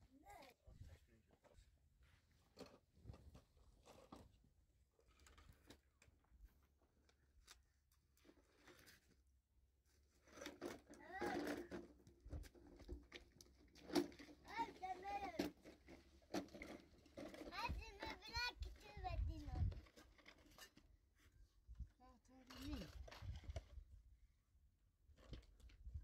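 Faint voices speaking in short snatches between about ten and twenty seconds in, with light clicks and rustles of things being handled.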